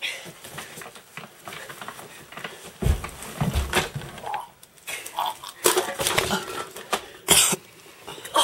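A boy retching and vomiting from motion sickness, with coughing heaves in several separate bursts.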